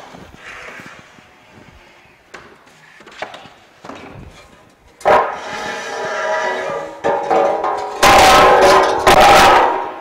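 Aluminium pallet scraping over a concrete floor and onto a pallet turner's steel forks, a harsh metallic scrape with ringing tones. It starts about halfway through and is loudest over the last two seconds as the pallet slides onto the forks. Before it come a few light knocks.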